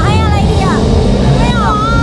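High-pitched voices with swooping pitch over a loud, dense low rumble.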